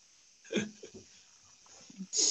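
One short vocal sound, hiccup-like, about half a second in, heard over a quiet video-call line, followed by faint small noises.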